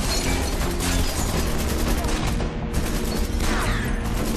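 Rapid gunfire with bullets striking a wall, over background music.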